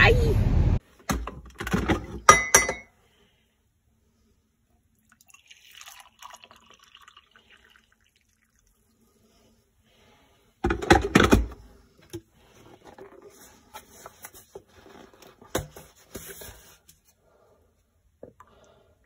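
Kitchen clatter of a glass coffee carafe and a mug: clinks and knocks on the counter, a faint pour of coffee, and a louder clatter about eleven seconds in. A second of car-interior road noise cuts off at the start.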